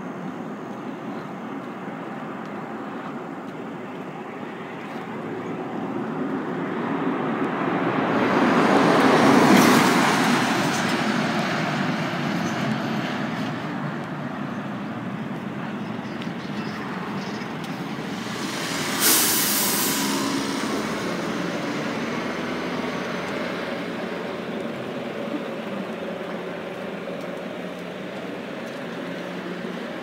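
Road vehicles passing on a two-lane country road: one grows louder, peaks about ten seconds in and fades away, and a second comes on more suddenly near the middle and fades more slowly, over a steady low hum of distant traffic.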